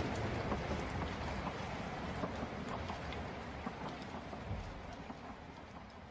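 Steady rain-like hiss with scattered light crackles, fading out.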